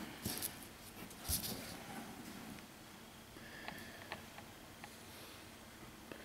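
Quiet handling of a plastic brake light switch in the hand: faint rubbing and a soft knock at first, then a few small, faint clicks against low room tone.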